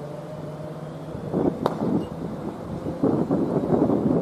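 Wind buffeting an outdoor microphone in irregular gusts from about a second in, loudest near the end, over a steady low hum. There is one sharp click partway through.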